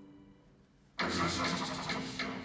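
A faint fading tail, then about a second in a sudden loud, dense burst of sound from the piece's played-back sound track, with a low steady rumble under it.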